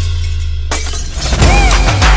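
Intro music with a held bass note, broken about two-thirds of a second in by a sudden glass-shattering sound effect as the beat drops out. It is followed by a short rising-and-falling tone.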